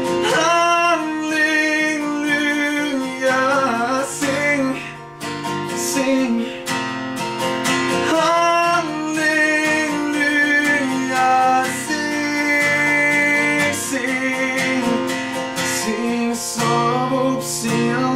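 Acoustic guitar strummed steadily in a song accompaniment, with a sung vocal line over it that the recogniser catches no words of.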